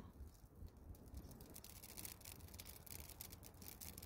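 Near silence: faint outdoor background noise with a few faint ticks.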